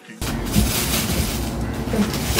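Background hip-hop music cuts off abruptly, then loud, continuous crinkling and rustling of a plastic mailer package being handled.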